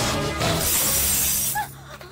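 Glass bangles shattering and crashing as a body lands on a stall stacked with them, with film music underneath; the crash drops away suddenly about one and a half seconds in, leaving a few faint tinkles.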